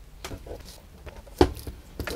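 Handling noise from a wooden melodeon being turned over in the hands: a few light clicks and one sharp knock about one and a half seconds in.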